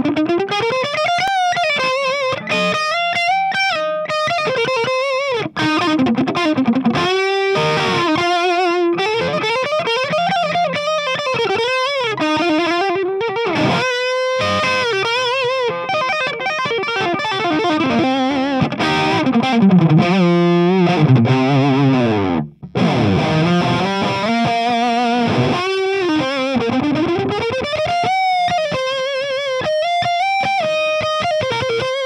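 Distorted electric guitar playing a lead solo: sustained single notes with string bends and vibrato, through an amp set to seven watts so it breaks up early. The opening is played on an 8k-ohm pickup.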